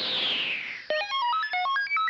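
A synthesized whoosh sweeping down in pitch, then about a second in, a rapid run of electronic beeps, about ten a second, jumping randomly up and down in pitch like computer or robot chatter.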